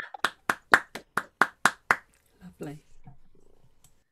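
Hand clapping over a video call: a steady run of claps, about four a second, stopping about two seconds in, followed by a few faint words.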